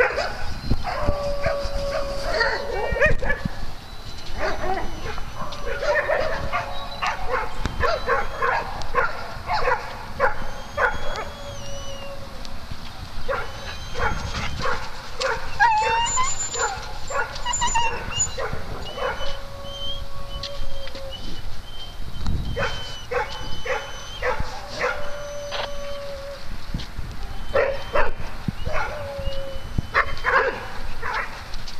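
Several dogs barking repeatedly in play, with long, steady whining or howling notes now and then between the barks.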